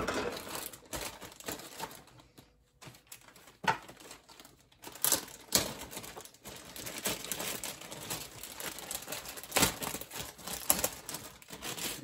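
Clear plastic bags of styrene model-kit sprues crinkling as they are handled, with the hard plastic parts clicking and knocking against each other and the bench several times.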